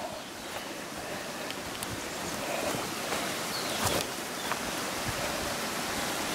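Water running in a small irrigation canal: a steady rushing hiss that grows slightly louder, with a couple of faint knocks.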